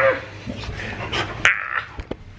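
Labradoodle giving several short, high-pitched calls in a row as it plays at a man's ear.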